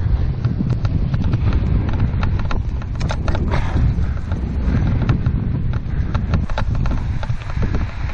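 Wind rumbling steadily on a helmet-mounted microphone while running, with a quick, irregular patter of footfalls and small clicks.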